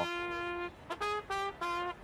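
Trumpet playing one long held note, then three short notes.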